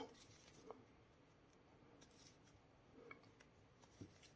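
Near silence, with a few faint soft ticks and rustles of a crochet hook working thick tape yarn.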